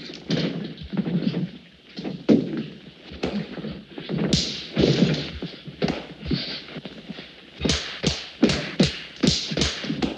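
Film fistfight: scuffling and thuds of grappling bodies, with scattered blows, then a fast run of about seven sharp punch impacts near the end.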